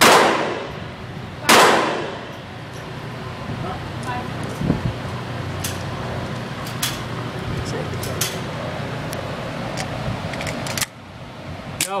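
Two gunshots about a second and a half apart, echoing around an indoor shooting range, followed by a run of small irregular clicks as .22 cartridges are pressed into a pistol magazine, with a louder knock near the end.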